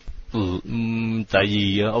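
A man's voice drawing out two long syllables on a level pitch, slow held speech with hardly any rise or fall, as if stretching out a word.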